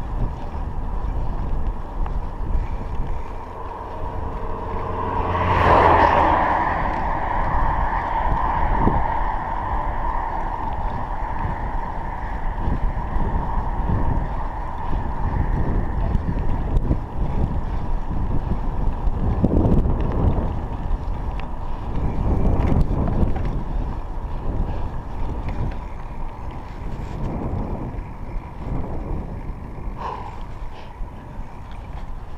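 Wind buffeting a chest-mounted action camera's microphone while riding a bicycle on a paved road, a steady low rumble. About six seconds in a louder swell with a steady whine rises and then fades slowly.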